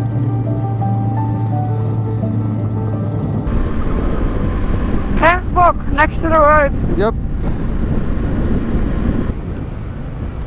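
Background music with held notes, cut off about three and a half seconds in by the riding noise of an adventure motorcycle on a gravel road: steady wind rush on the microphone over the engine. A person's voice is heard briefly in the middle.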